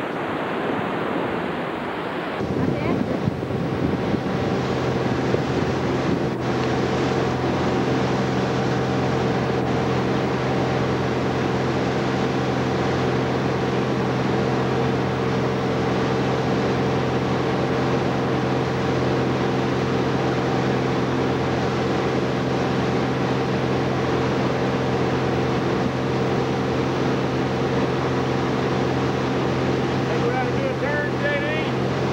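Surf breaking and wind for about two seconds. Then a motorboat's engine runs steadily at speed, with rushing water and wind on the microphone.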